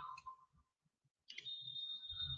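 Near silence, then about a second in a click followed by a faint, steady high-pitched beep lasting about a second.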